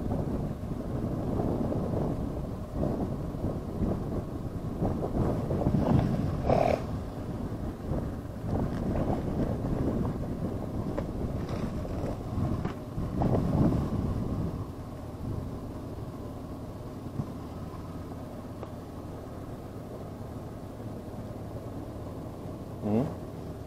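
Vehicle and road noise: an uneven low rumble that eases about fifteen seconds in and settles to a steadier, quieter hum.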